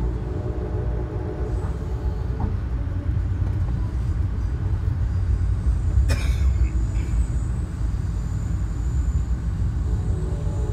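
Steady low rumble inside a moving Amtrak passenger car as the train rolls along the track, with one sharp clank about six seconds in.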